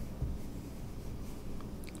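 Faint rubbing of a fingertip sliding over a glossy magazine page, over a low steady hum.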